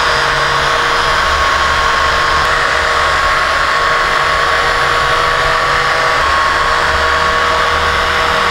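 Small handheld hair dryer running steadily: an even rush of air with a steady motor whine.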